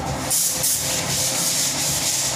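Hand sanding of a wall surface: a hissing, scratchy rub that comes in quick back-and-forth strokes, starting shortly after the beginning.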